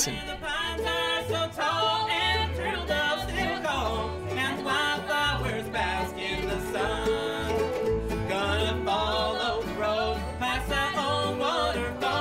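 Live bluegrass band playing an up-tempo tune on mandolin, acoustic guitars and fiddle, with voices singing over a steady bass beat.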